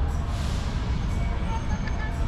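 Outdoor ambience: a steady low rumble with faint distant voices.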